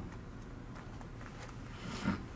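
Potter's wheel running steadily while wet clay is pressed inward by hand; a faint, even sound.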